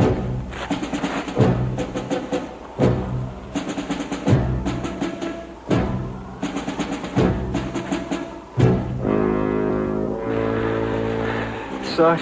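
Dramatic orchestral TV score: a timpani stroke about every second and a half under brass chords, giving way to sustained held chords near the end.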